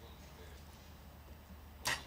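Low steady background hum, then near the end a single sharp crack as a compound bow is shot.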